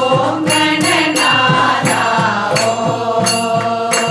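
A group of voices singing a devotional chant together, with a two-headed barrel drum keeping a steady beat of about three strokes a second and sharp percussion strokes on top.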